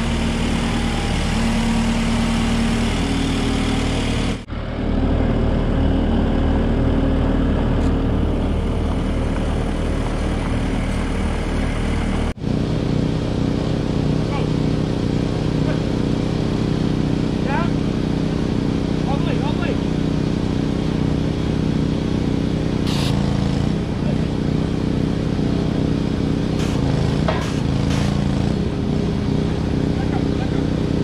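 Skid steer engine idling steadily, with the sound briefly dropping out twice, about four and twelve seconds in.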